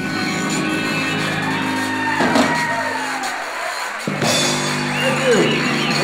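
Live zydeco band playing, electric bass underneath, with sustained notes. Two sliding, arching notes rise and fall over the band, about two seconds in and again about five seconds in.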